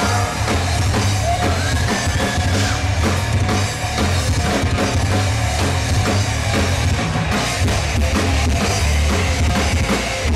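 A live rock band playing an instrumental passage: a drum kit with a steady beat, electric bass and electric guitar, loud and dense throughout.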